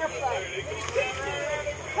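Faint, indistinct voices talking over a low, steady background rumble.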